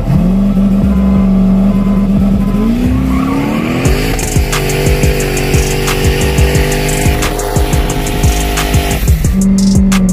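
A car running hard, mixed with a music track. A sustained tone rises in pitch about three seconds in, holds, and drops back near the end, with a regular beat of sharp hits through the middle.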